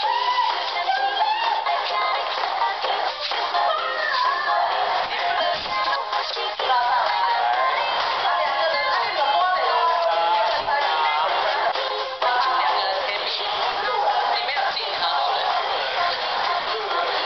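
Background music: a song with a high singing voice that runs without a break.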